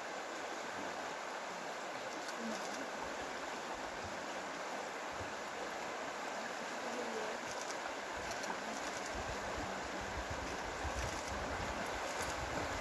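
Steady rush of a shallow river running over rocks, with low wind rumble on the microphone in the last few seconds.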